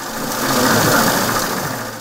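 Banknote counting machine riffling through a stack of notes: a fast, even mechanical whirr that swells in and fades out.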